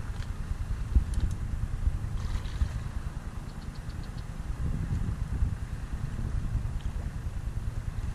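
Wind buffeting the camera's microphone: a low, uneven rumble, with a brief knock about a second in.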